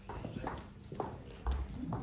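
Footsteps on a hard stone floor, about two steps a second, with a heavier thud near the end.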